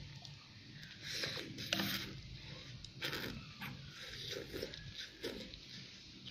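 Instant noodles being slurped and chewed: a few soft slurps, the loudest about one to two seconds in, with quieter ones around three and five seconds.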